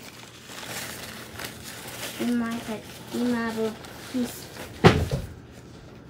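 A few short voiced sounds from a girl, then a single sharp knock about five seconds in, such as a cupboard door or a hard object striking a counter.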